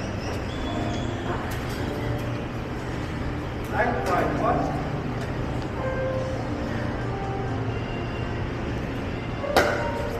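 Pickleball paddles hitting a plastic ball during a rally: a few faint pops, then one sharp, loud pop near the end, over a steady low hum with background voices and music.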